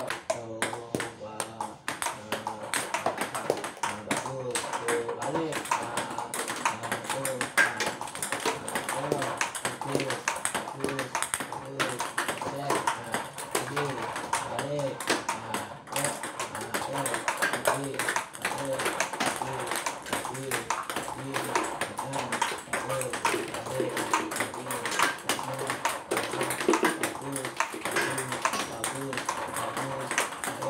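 Table tennis balls clicking off paddles and bouncing on the table, one after another, in a multiball practice drill: balls fed from a bowl and hit back by a young player. Voices are heard under the clicks.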